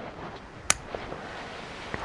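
A single sharp snip of bonsai pruning scissors cutting through a small Lonicera nitida twig, a little under a second in, followed by a faint tick.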